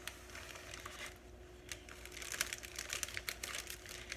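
Thin plastic zip-top bag and printer paper crinkling and rustling as the paper is slid into the bag. It begins as sparse small crackles and grows to a busy run about halfway through.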